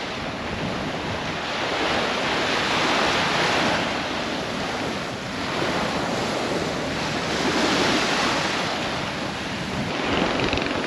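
Small waves breaking and washing up onto a sandy beach, the surf rising and falling in slow swells every few seconds.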